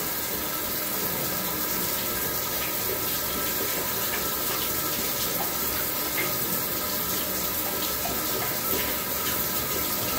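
Steady rush of running bath water from a handheld shower sprayer as a Great Dane puppy is rinsed in the tub.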